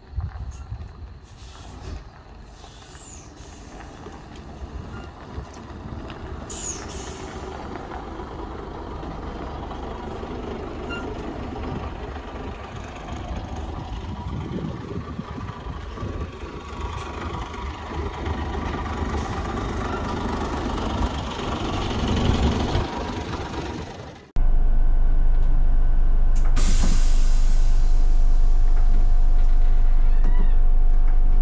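A coach bus's diesel engine running as the bus creeps in over gravel, growing louder as it draws close and passes. After an abrupt cut the engine idles loud and steady as heard from inside the cab, with a short hiss of air from the air brakes.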